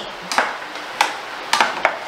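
A utensil knocking and scraping against a stainless-steel saucepan as a thick sauce is stirred, with four sharp knocks at uneven intervals.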